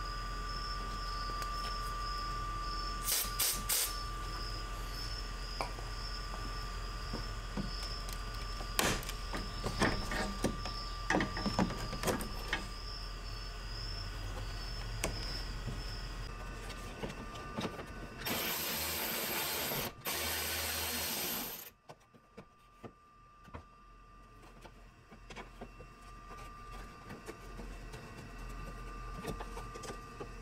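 Scattered clicks and light knocks of hands and a small tool pulling a plastic push-in clip and 10 mm bolts from a car's plastic radiator support cover, over a steady low hum. A burst of hiss comes about 18 seconds in and lasts about three seconds.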